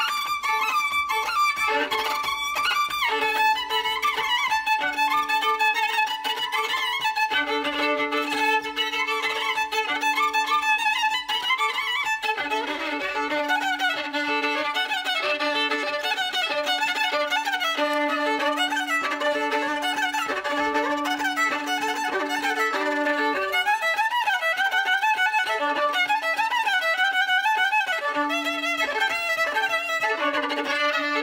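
Solo violin playing a Ukrainian folk fiddle tune: an ornamented melody moves above a low drone note held beneath it for long stretches, the drone breaking off briefly a few times.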